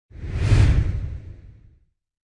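Logo intro whoosh sound effect: a single swoosh with a deep low rumble under it, swelling to a peak about half a second in and fading away over the next second.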